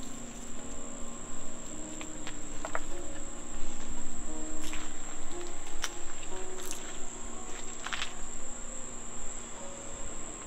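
Insects, crickets by their sound, trilling as one steady high-pitched tone, with a few light clicks partway through.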